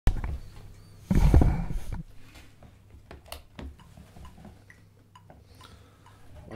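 A sharp knock at the very start, a loud low rumbling rustle from about one to two seconds in, then scattered small clicks and taps.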